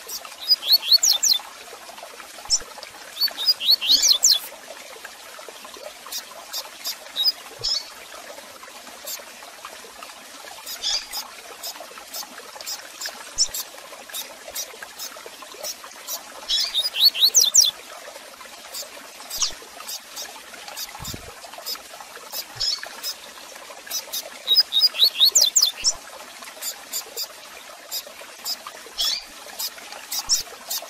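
Double-collared seedeater (coleiro) singing its 'tui tui zel zel' song and chirping. Bursts of rapid high sweeping notes come every few seconds, with single sharp chirps in between.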